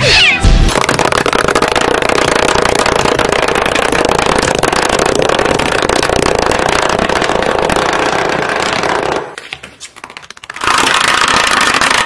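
Cat meows and fighting yowls, stacked into several pitch-shifted copies by a 'G Major' editing effect, so they form a dense, distorted, chord-like wall of sound. It drops away for a second or so after about nine seconds, then comes back just as loud near the end.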